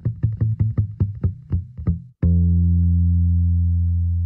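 Bass guitar intro played back from a mix, with an effect panned alternately left and right: a quick run of repeated plucked notes, about five a second. About two seconds in, a long sustained low bass note takes over.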